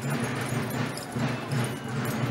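Street procession sound: the footsteps of many marchers on pavement, with music mixed in.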